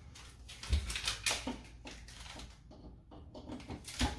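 Handling noise as a clothes dryer's power cord is plugged into the wall outlet: a string of light clicks and knocks, with a dull thump a little under a second in.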